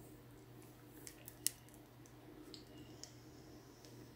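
Faint handling noise of foam pillow rollers being unwound from hair: soft rustles and a few light clicks over a steady low hum, the sharpest click about one and a half seconds in.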